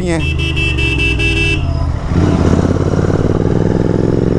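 Royal Enfield Continental GT 650's parallel-twin engine running under way, with a vehicle horn sounding steadily for about a second and a half near the start; from about halfway the engine is opened up and its note rises.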